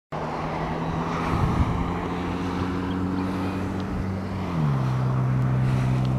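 Wind and road noise from a bicycle rolling along a concrete path, with a steady low hum that slides down in pitch about two-thirds of the way through and then holds.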